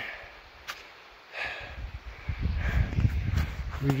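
A hiker breathing hard on a steep climb, with low rumbling buffeting on the microphone through the second half.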